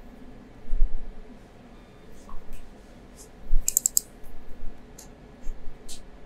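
Scattered clicks of a computer keyboard and mouse, with a quick run of several clicks about four seconds in and a couple of low thumps along the way.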